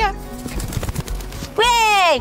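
Wingbeats of a small falcon flapping in a quick run of soft flutters as it flies up after a piece of meat thrown into the air. About a second and a half in, a woman's long falling 'oh' cuts in over faint background music.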